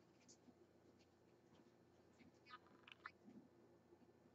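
Near silence: room tone, with a few faint soft ticks and rustles a little past the middle.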